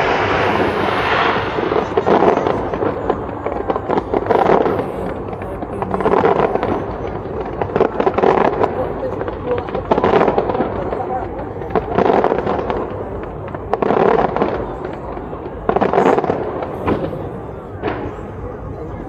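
Fireworks display: aerial shells bursting and crackling in repeated salvos, the noise swelling about every two seconds.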